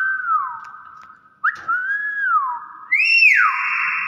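Hill myna whistling loudly, three whistled phrases about a second and a half apart, each a quick upward flick followed by an arching glide that rises and falls. The last is the highest and loudest and is held longest.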